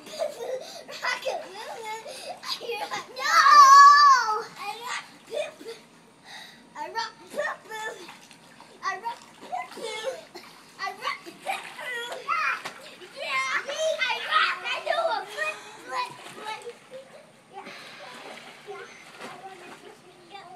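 Children shouting and chattering as they play in an above-ground pool, with some water splashing; a long, high-pitched shriek about three seconds in is the loudest moment.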